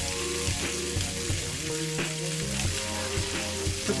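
Olive oil sizzling steadily in a frying pan with caramelized onions, garlic and freshly added cherry tomatoes. Held musical tones run quietly underneath.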